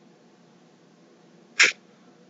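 Near silence, broken about one and a half seconds in by a single short, sharp breath noise from the man.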